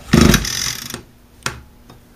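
Recoil starter rope pulled once on an Echo SRM 225 string trimmer, spinning the small two-stroke engine over for about a second during a spark test, followed by a single sharp click.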